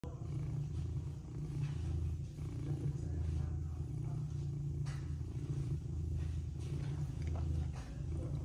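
Domestic cat purring loudly while being scratched on the head, a steady low rumble that swells and eases in waves about once a second.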